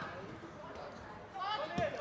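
Faint background noise from a football pitch broadcast during a break in the commentary. About one and a half seconds in, a man's commentating voice starts up.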